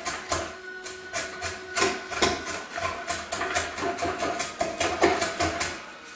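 A quick run of uneven scraping or knocking strokes, about four to five a second, from a hand tool working wood. Faint steady tones sound behind them.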